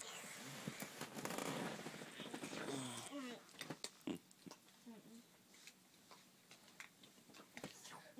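A child's soft vocal noises over a rustling hiss for about three seconds, then a few light clicks and faint voice sounds.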